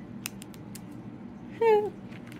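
A few faint, light clicks from handling plastic page protectors in a three-ring binder, then a short snatch of a woman's voice near the end.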